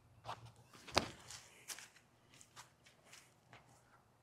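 Faint footsteps of sneakers on a concrete tee pad during a disc golf throw run-up: a few short footfalls in the first two seconds, the sharpest about a second in, then only faint ticks.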